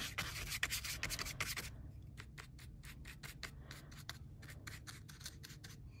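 Paintbrush bristles brushing and dabbing gold acrylic paint onto embossed aluminium metal tape: a quick run of faint, short strokes, about four a second in the second half.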